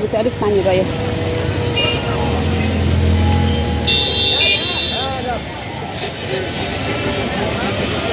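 Busy street traffic on a wet road: a car passes close with a low engine and tyre rumble, and a high-pitched vehicle horn toots briefly about two seconds in and again for about a second around the four-second mark.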